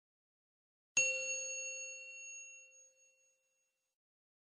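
A single struck metallic chime about a second in, ringing with several clear high tones that fade away over about two seconds.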